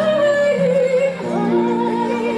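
A voice singing a slow melody with held notes, accompanied by harps and sustained lower notes.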